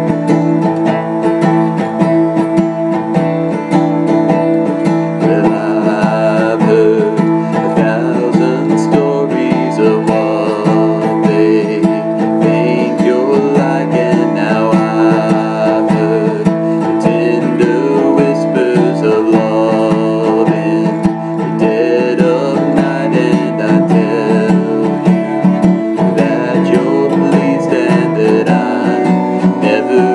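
Steel-string acoustic guitar strummed steadily in chords. From about five seconds in, a man hums the melody over it.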